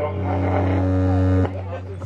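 Loud, steady low electrical buzz from a PA system, heard as the handheld microphone changes hands; it cuts off suddenly about one and a half seconds in.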